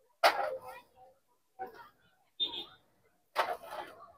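Brief snatches of people talking nearby, in four short bursts with silence between them. The first burst is the loudest.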